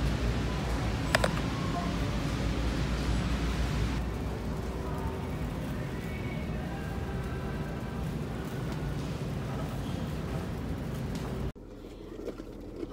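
Big-box store ambience: a steady low hum and rumble with faint distant voices and a sharp click about a second in. It drops abruptly to a quieter car-cabin background near the end.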